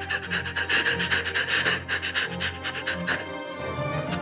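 A man sobbing in quick, gasping breaths over a low, steady music drone; the sobbing stops about three seconds in.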